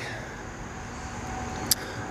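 Steady outdoor background noise with a faint hum, and one short click near the end.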